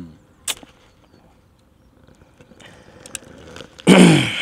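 A man breathing in audibly, then letting out a loud sigh near the end whose voice falls in pitch, with a single click about half a second in.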